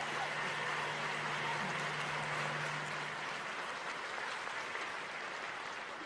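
Audience applauding steadily, easing off slightly toward the end. A faint low hum runs beneath the clapping and stops about halfway through.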